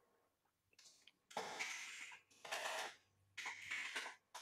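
Faint computer keyboard typing in three short runs of keystrokes, each about half a second long.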